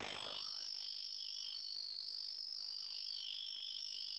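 A faint, steady high-pitched buzz with no speech, which starts abruptly as the voice feed cuts out.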